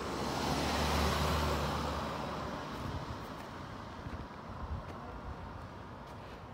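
A car driving past, its engine and tyre noise swelling to a peak about a second in and fading away by about three seconds.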